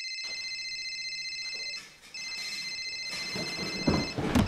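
Telephone ringing with an electronic, trilling ring tone: two rings, the first breaking off about two seconds in and the second starting a moment later. A louder thud with shuffling noise comes near the end.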